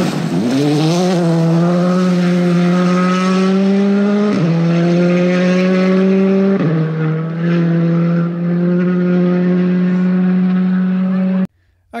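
Rally car engine held at high revs, its pitch bending up near the start, then two quick dips in pitch about four and six and a half seconds in before it settles again. The sound cuts off abruptly near the end.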